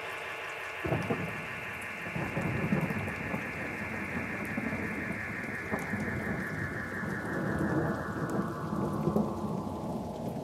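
Beatless breakdown in a DJ mix: a rain-and-thunder-like wash of noise with a faint held chord under it, and a low rumble coming in about a second in. The whole texture is filtered so that its top end closes steadily downward.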